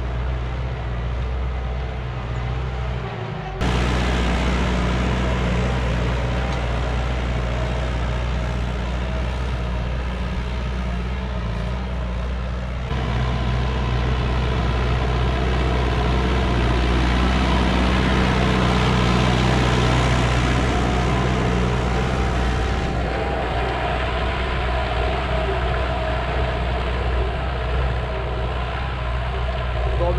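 McCormick MC130 tractor engine running steadily under load while pulling a 32-disc harrow through the field soil. The sound changes abruptly in level and tone about 4, 13 and 23 seconds in.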